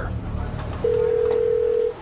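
A steady electronic beep tone, one unchanging pitch, sounds for about a second, starting about a second in, over a low hiss.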